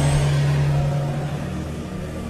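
Background music of sustained low chords held under the pause, with a broad rushing wash that fades away over about the first second.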